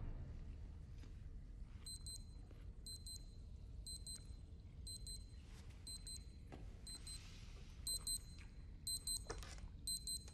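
A child's digital wristwatch beeping its alarm: short clusters of quick, high-pitched electronic beeps, repeating about once a second with a few pauses.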